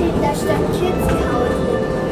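Monorail car running along its track with a steady low rumble, with indistinct voices and music over it.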